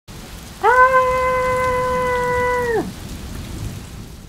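Steady rain sound. About half a second in, a loud, long, high-pitched "Ahhh" cry sets in. It is held at one pitch for about two seconds, then slides down and stops, while the rain carries on.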